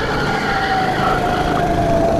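Racing kart engine running at speed, a steady drone whose pitch climbs slowly as the kart accelerates out of a corner, over rough running noise.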